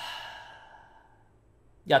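A man's long, breathy sigh ("haa…") that starts suddenly and fades away over about a second, a sigh of dismay.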